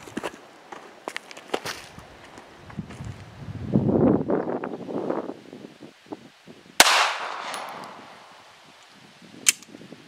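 A .380 Smith & Wesson M&P Shield EZ pistol fires one loud shot about seven seconds in, the report trailing off over about a second. A shorter, weaker sharp crack follows near the end.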